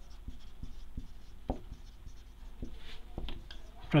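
Marker pen writing on a whiteboard: a run of short strokes and light taps as words are written out, one slightly louder stroke about a second and a half in.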